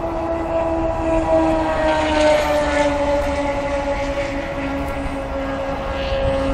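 A steady engine drone whose pitch sinks slowly, over a low rumbling hiss.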